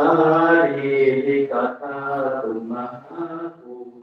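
Thai Buddhist monks chanting Pali verses together in the evening chanting service (tham wat yen), low male voices in a steady recitation, the phrase trailing off near the end.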